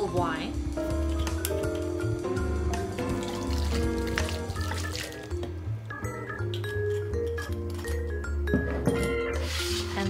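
Instrumental background music with held notes over a steady bass line, with red wine glugging faintly from a bottle into a glass bowl of flour.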